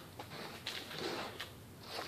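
Hands mixing damp potting mix in a wooden tray: a faint rustle and crumble of the soil, with a few small ticks.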